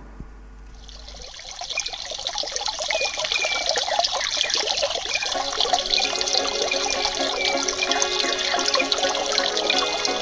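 Rushing water of a waterfall pouring into a pool, fading in about a second in and growing louder. Music with held tones enters about halfway and plays beneath it.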